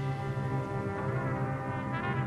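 Music: brass instruments holding a low chord.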